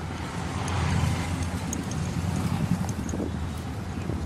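Light knocks and clicks of a metal power-window regulator and motor being handled and fitted, over a steady low hum.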